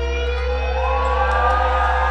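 Live rock band playing a slow power ballad: a held bass note under sustained electric guitar notes, with a long note sliding up and holding from a little before halfway through.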